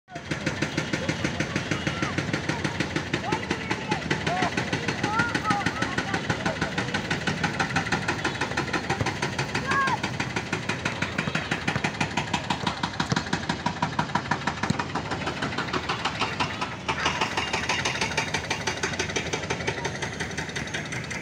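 Children's voices and calls across an outdoor football practice, over a steady, rapidly pulsing engine-like running that carries on throughout. The background changes character about three-quarters of the way through.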